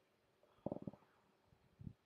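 Near silence with a quick run of faint, dull low taps a little past half a second in and one soft thud near the end.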